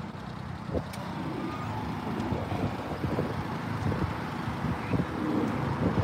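Small engine of a Daihatsu Hijet kei dump truck running while its tipper bed is raised. The sound grows steadily louder as the bed goes up.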